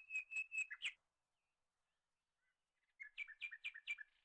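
High-pitched bird-like chirping in two quick runs of about five or six chirps a second: the first ends about a second in, the second starts near the end, slightly lower in pitch.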